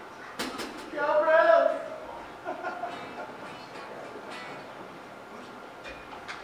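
Low murmur of voices in a music club, with a few sharp clicks about half a second in and one voice calling out briefly about a second in; no instruments are playing.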